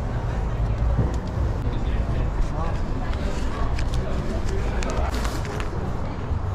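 Indistinct voices talking over a steady low rumble, with a few light clicks about five seconds in.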